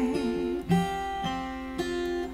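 Acoustic guitar playing chords between sung lines, each chord left to ring, with a new chord struck about every half second.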